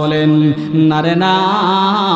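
A man's voice intoning a sermon in a drawn-out chant, the melodic delivery of a Bengali waz. He holds a steady note for about a second, then a longer note that wavers up and down.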